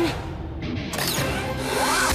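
Cartoon soundtrack: background music mixed with sound effects. About halfway through, a burst of noise comes in with pitches that glide down and then up.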